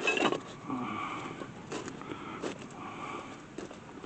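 Handling sounds of a brake caliper bracket being worked by hand while a rolled rag is twisted in its slide-pin bore to clear old grease: a louder scrape right at the start, then soft rubbing and a few light metal clicks.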